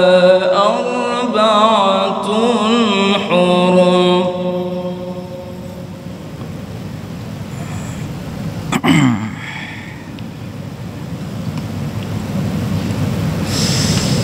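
A man's melodic Quran recitation through a microphone: one long, ornamented, wavering phrase that ends about five seconds in. A pause filled with hall noise follows, broken by one sharp knock near nine seconds.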